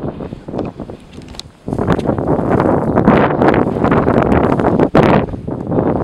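Wind buffeting the microphone: a loud gust comes in suddenly about two seconds in and blows for about four seconds, with a brief break near the end.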